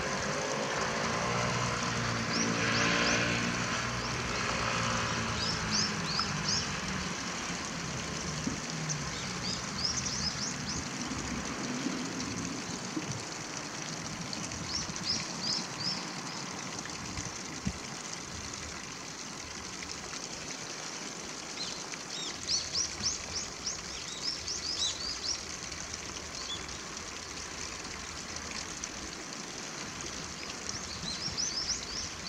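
Outdoor ambience by a shallow stream: a steady background hiss, with small birds giving clusters of short high-pitched chirps every few seconds. Over the first dozen seconds a low engine drone from a passing vehicle falls in pitch and fades away.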